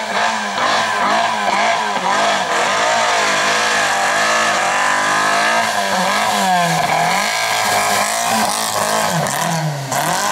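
A Volkswagen Golf Mk1 slalom car's engine is revved hard and let off again in quick repeated surges, its pitch rising and falling as the car weaves through the cones. Near the middle there is a longer climb in pitch.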